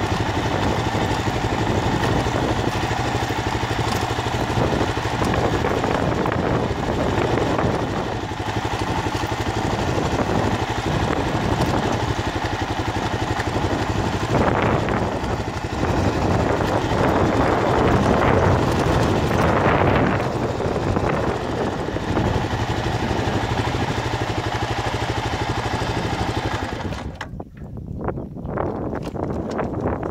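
Motorcycle engine running steadily while riding. About three seconds before the end the sound drops off sharply.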